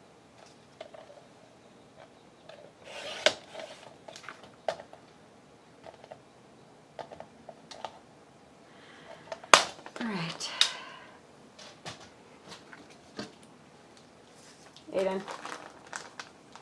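Paper being trimmed on a sliding paper trimmer and handled: a short rasping cut about three seconds in, then scattered clicks and knocks, the loudest a sharp knock about halfway through, as the trimmer is moved aside.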